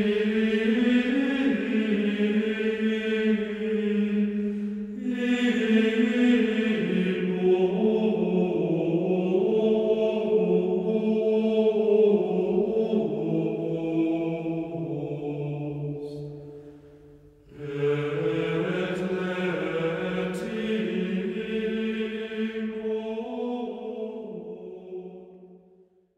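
Slow, unaccompanied sung chant in long held notes that step from pitch to pitch. It breaks off briefly about two-thirds of the way through, resumes, and fades out at the end.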